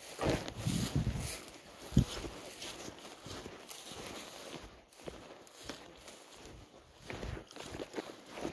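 Footsteps through dry, tall grass, with rustling and irregular low bumps from movement and handling. One louder thump comes about two seconds in.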